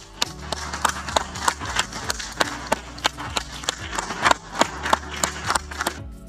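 Scattered hand claps, a few a second and unevenly spaced, from a small audience applauding after a speech, over a low steady hum.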